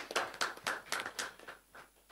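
Scattered hand clapping from a small audience, thinning out and stopping shortly before the end.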